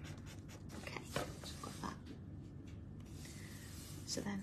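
Paper blending stump (tortillon) rubbing graphite shading into a paper tile: quick short scratchy strokes for about the first second, then a few lighter scattered rubs.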